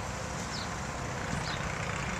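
Steady outdoor background noise, a low rumble and hiss typical of distant traffic, with a few faint short high chirps.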